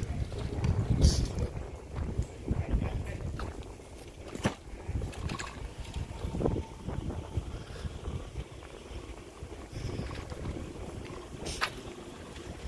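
Wind rumbling on a handheld phone microphone, with a few sharp clicks, one about four and a half seconds in and one near the end.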